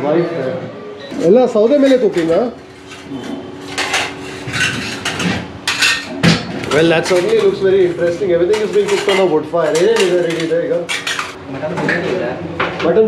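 Large aluminium cooking pots and their lids clanking and clinking in a busy kitchen, with a run of sharp metal clinks in the middle, under men's voices talking.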